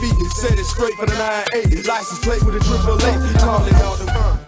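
Hip hop track with a rapping voice over a heavy bass beat. The bass drops out for about a second partway through, then comes back.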